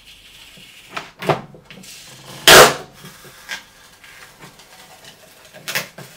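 Adhesive paper label being peeled off the glossy plastic front of an air fryer drawer: a few short tearing rips, the loudest about two and a half seconds in.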